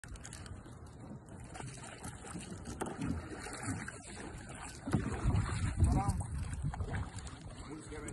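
Wind buffeting the microphone, loudest about five to six and a half seconds in, over light splashing of a kayak paddle dipping into the water.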